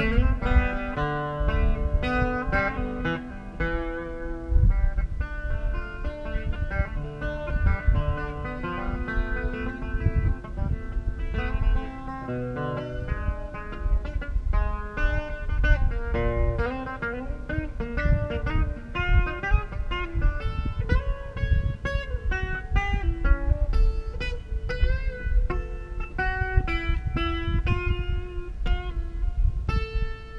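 Amplified acoustic guitar playing an instrumental break with no singing: picked single-note melody lines over bass notes and chords, with some notes bent in pitch.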